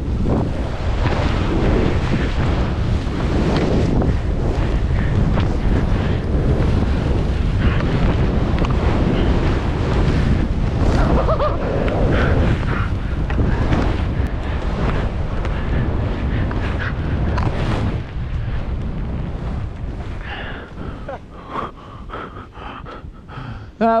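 Rushing wind on the microphone and skis hissing through deep powder snow during a fast downhill run. It is steady and loud for most of the run, then eases off and turns uneven toward the end as the skier slows.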